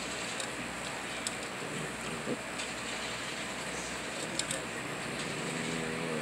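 A Jack Russell–Chihuahua mix eating from its bowl: a few sharp crunches of chewing over a steady hiss, two of them close together past the middle.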